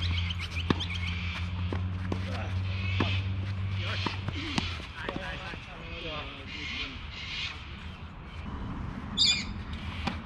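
Birds calling on and off, with a steady low hum through the first half that stops about five seconds in. A single sharp knock comes about a second in, and a short, loud, high call near the end.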